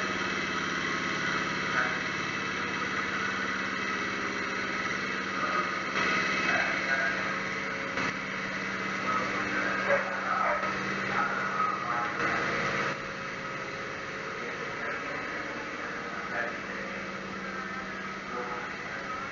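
A steady low mechanical hum with faint distant voices now and then; it gets a little quieter about two-thirds of the way through.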